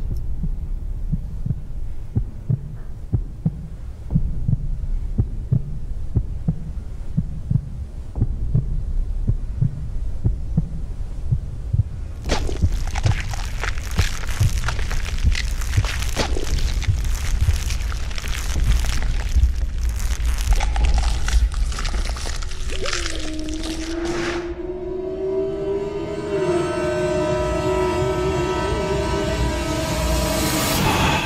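Dark ambient soundtrack with a low, throbbing heartbeat-like pulse. About twelve seconds in, a loud rushing noise builds over it. In the last few seconds this gives way to a drone of held tones, one of which bends upward and then holds.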